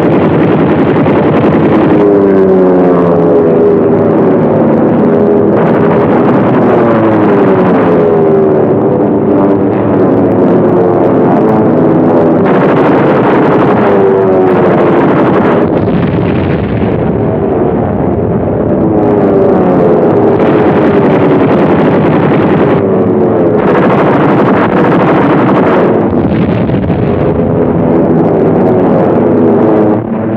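Loud, continuous drone of WWII piston-engine warplanes, its pitch sliding up and down as aircraft pass and manoeuvre. The sound is dull and cut off in the highs, as on an old film soundtrack.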